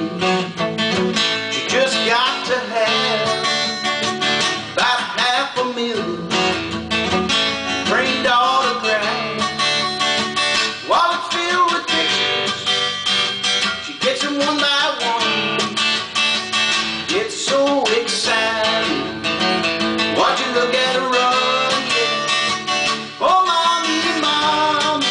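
Cort acoustic guitar amplified through a Zoom acoustic effects pedal, strummed and picked in a rock-and-roll instrumental break, with notes sliding upward at the start of phrases every few seconds.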